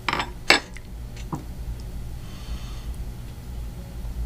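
A small metal spoon being set down on a wooden tabletop: two sharp clinks in the first half second, then a lighter tap a little after a second.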